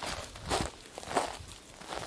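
Footsteps of a person walking over dry pine needles and dirt, a few steps in succession.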